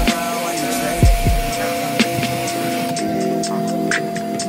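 Hip hop music with a steady beat of ticking hi-hats and a deep falling bass hit about a second in.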